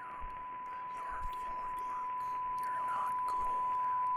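A steady, single-pitched electronic beep tone, held without a break and slowly growing louder, over faint whispered voices.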